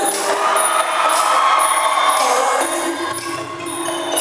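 Live Thai likay theatre music: small hand cymbals strike a steady beat about twice a second under a long held melodic line.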